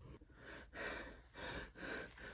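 A person breathing audibly: a few quick, noisy breaths in a row, without voice.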